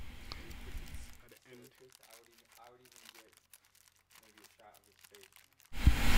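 Clear plastic bag crinkling faintly as its gathered neck is worked through a short piece of PVC pipe. The middle is nearly silent, and a louder, even noise starts suddenly just before the end.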